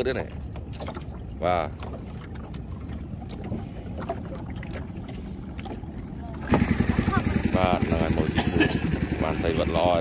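A nearby boat engine starts suddenly about six and a half seconds in and runs with a fast, even low beat, with voices talking over it. Before it there is only a low background hum and a brief voice.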